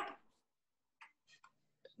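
Near silence after a spoken word ends, with a few faint short clicks about a second in and again near the end.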